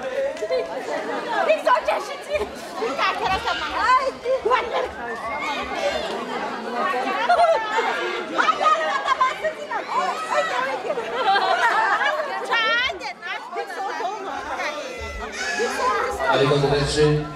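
Many voices talking over one another: crowd chatter. A high wavering sound stands out briefly about twelve and a half seconds in.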